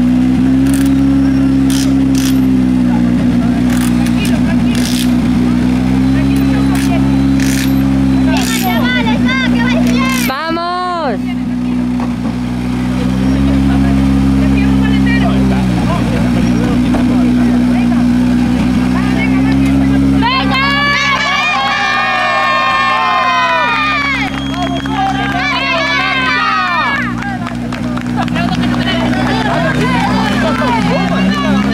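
Škoda Fabia rally car's turbocharged four-cylinder engine running at a fast idle while stationary, its revs rising and falling every few seconds. Voices shout over it around a third of the way in and again in the last third.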